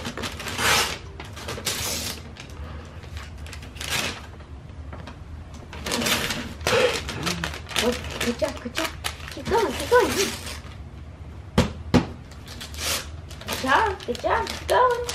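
Foil wrapping paper crinkling and tearing in repeated short bursts as a baby pulls it off a large gift box.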